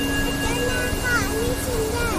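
Water rushing steadily down the stepped cascades of a spillway, with people's voices calling out over it.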